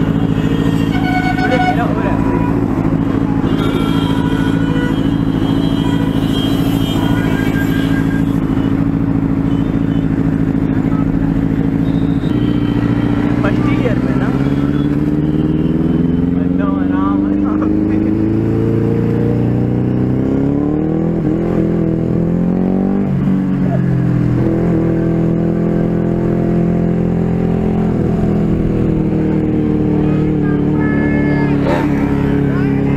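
Benelli TNT 600i inline-four engine running under way, holding a steady pitch for about twelve seconds, then rising and falling in pitch several times as the bike accelerates and changes speed, before settling to a steady note again near the end.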